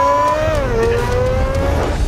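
Car accelerating: a rising whine that dips briefly about half a second in, climbs again and fades out near the end, over a low rumble.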